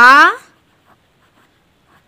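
A woman's voice draws out the syllable "ra" for about half a second, then a pen scratches faintly as it writes on notebook paper.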